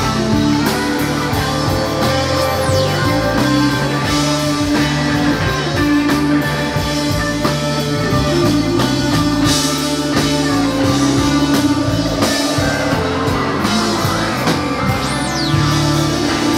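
A live band playing a rock jam: a tenor saxophone over electric guitars, electric bass and a drum kit, with steady cymbal wash and a moving bass line.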